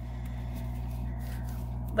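A steady low electrical hum with a faint soft haze of fabric and paper being handled; no distinct knocks or clicks.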